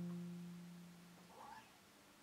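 A plucked double bass note ringing out and fading away, with a faint short higher sound about one and a half seconds in.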